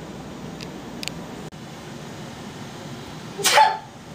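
A person's single short, sharp sneeze-like burst about three and a half seconds in, over steady room hiss, with a couple of faint clicks earlier.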